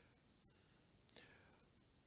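Near silence: room tone, with a faint breath a little after a second in.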